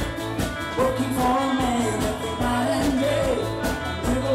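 Live rock band playing: sung vocals over guitars, bass and a steady drum beat, recorded in the room.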